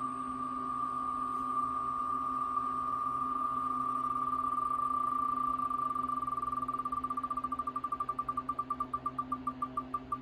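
Tick sound of an online spinning name wheel played through a laptop's speaker. At first the ticks come so fast they blur into one steady tone; from about six seconds in they separate into distinct clicks, slowing to about four or five a second by the end as the wheel winds down.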